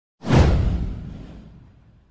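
A whoosh sound effect with a deep low boom under it, swelling in suddenly and fading away over about a second and a half.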